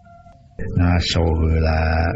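A man's voice making a drawn-out, strained grunting vocal sound, starting about half a second in after a brief lull.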